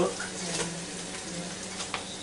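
Steady hiss over a low hum from a just-finished air fryer and its hot chicken wings, with a sharp click near the end as the basket is handled.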